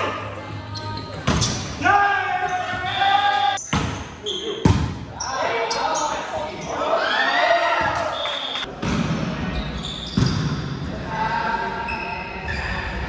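Indoor volleyball rally in an echoing gym: a few sharp smacks of the ball being played, with players shouting calls to each other.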